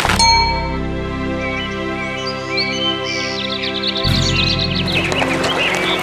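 A bright chime struck once at the start and ringing on, slowly fading, over background music. Short bird chirps come in about two seconds in, and a deeper tone joins about four seconds in.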